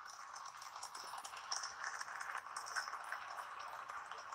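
Faint steady hiss with light scattered crackle: the recording's background noise in a pause between words.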